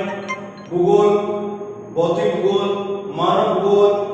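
Chanting of a mantra with musical accompaniment: long, held phrases of about a second each, separated by short breaths, over a steady low tone.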